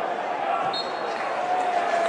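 Football stadium crowd noise: a steady murmur of fans with shouting voices. A short high whistle sounds about a second in.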